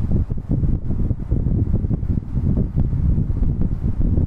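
Wind buffeting the microphone: a loud, uneven low rumble that rises and falls.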